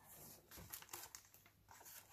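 Faint rustling and handling of paper sticker sheets and a planner being moved about, with a few light, short rustles.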